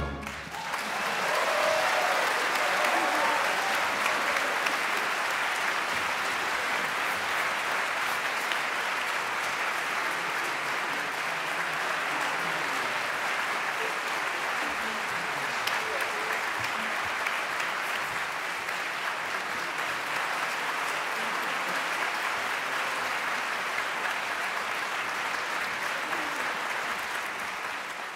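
Concert audience applauding after an opera duet. The applause builds over the first two seconds and then holds steady.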